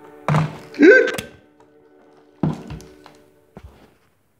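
Piano-key push buttons of a Pacsirta AR-612 valve radio pressed with heavy clunks: one about a third of a second in, followed by a short rising whistle from the set, another about two and a half seconds in, and a lighter knock near the end. The radio's faint music plays under them and stops near the end.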